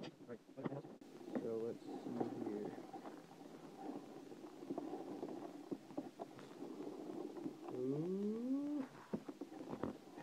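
Styrofoam packing peanuts rustling, crunching and squeaking as hands dig through them in a cardboard box, with one longer rising squeak about eight seconds in.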